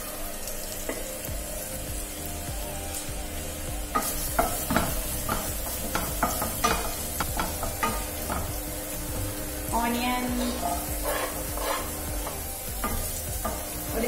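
Chopped ginger, garlic and green chilli sizzling in hot oil in a stainless steel frying pan, a tempering of cumin and asafoetida. From about four seconds in, a wooden spatula scrapes and knocks against the pan again and again as the mixture is stirred.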